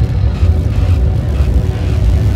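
A loud, deep rumble of cinematic sound design, like a jet or engine pass, with faint music beneath it.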